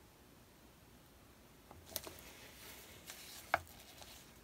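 Faint room tone, then from about two seconds in a few soft clicks and rustles of gloved hands handling a paint-covered canvas on a spinner, with a sharper click near the end.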